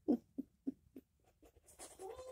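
A child's quiet, stifled giggling: a run of short snickers, about three a second, trailing off.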